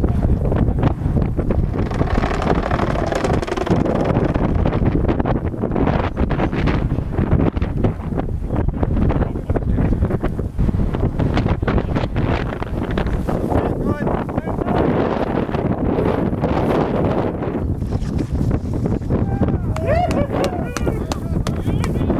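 Strong wind buffeting the microphone, a continuous rough rumble with irregular gusts.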